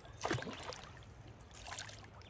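A hooked gar thrashing at the water's surface, splashing twice: a loud splash about a quarter second in and a smaller one near the end.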